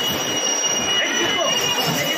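Bumper car ride in motion: a continuous noisy rumble under a steady high-pitched whine, with voices calling out over it.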